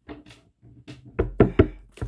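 A few sharp knocks on a table as a deck of playing cards is handled and cards are set down, the loudest two close together about a second and a half in.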